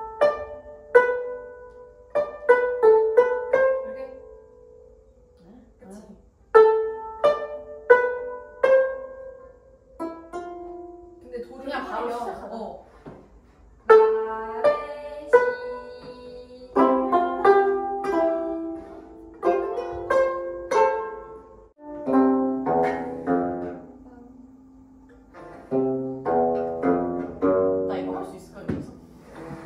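Two gayageums, Korean plucked zithers, playing a Christmas medley in practice: short phrases of plucked notes that ring and decay, stopping and starting again. The playing grows denser, with several notes sounding at once, in the second half.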